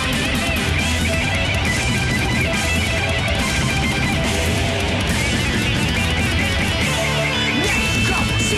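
Instrumental stretch of a fast, aggressive thrash metal song: distorted electric guitars and bass driving on with drums and cymbals, with no singing.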